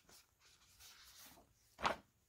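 A page of a paper picture book being turned by hand: a soft paper rustle, then a short, louder swish as the page comes over near the end.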